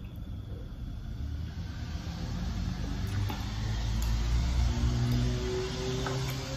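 Low rumble of a passing road vehicle, building to a peak about four to five seconds in and easing off, with a few faint clicks over it.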